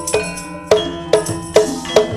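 Javanese gamelan music: metallophones ringing in sustained tones, punctuated by sharp kendang drum strokes about every half second.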